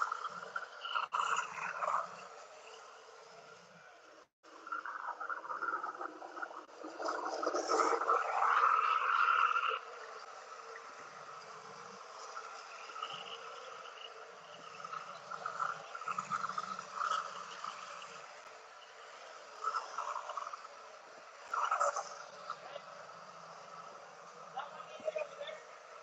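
Long-wand propane torch running with a steady hiss as its flame is swept over freshly poured epoxy resin to pop surface bubbles, growing louder in uneven stretches, most of all from about five to ten seconds in.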